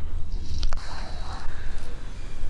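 Strong wind buffeting the microphone in a low, uneven rumble, with one sharp crack a little under a second in.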